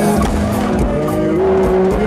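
Live concert music over a PA system, bass-heavy, with a held note that slides upward partway through and is sustained.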